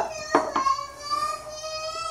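A child's long, high, steady wail in the background, its pitch barely moving, with a light click about a third of a second in.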